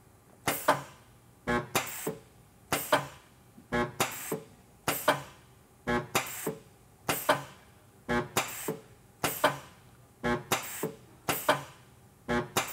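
AC resistance spot welder making a series of welds in quick succession: a short, sharp burst of sound about once a second, with quiet between the bursts.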